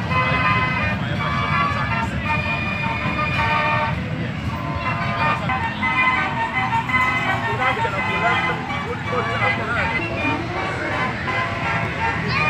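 Fairground organ music playing in a run of steady, bright notes, over a low rumble and the chatter of voices.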